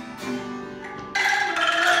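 Ensemble music of shaken bamboo angklung chords with a string instrument. It is softer for about the first second, then the full ensemble comes in loudly with sustained ringing chords.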